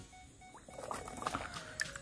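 Faint small clicks and water noise as a die-cast toy car is lifted from shallow water over sand and pebbles.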